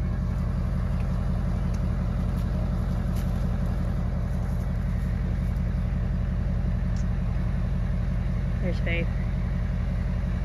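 A vehicle engine idling steadily, with a short voice heard once just before the end.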